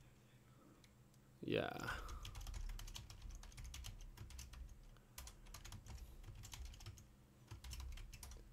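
Typing on a computer keyboard: a run of faint, irregular key clicks that starts about two seconds in and continues to the end.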